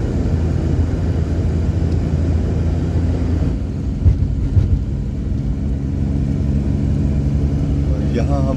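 Inside a moving vehicle at highway speed: a steady low rumble of engine and tyre noise, with a deep, even engine hum. Two brief thumps come around four seconds in.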